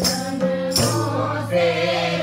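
A group singing a devotional song together, with tabla drum strokes and hand clapping keeping a steady beat.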